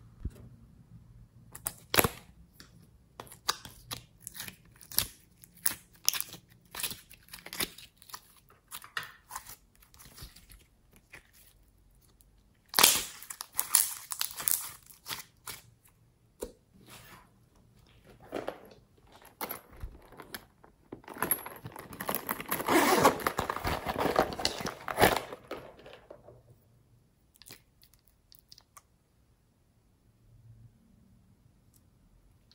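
Hands pressing, squishing and mixing sticky glossy slime in a tray: a string of sharp crackles and pops as air pockets burst and the slime pulls apart, building to a few seconds of dense, continuous crackling past the middle.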